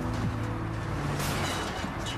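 Background music with a held chord, over a steady noisy wash.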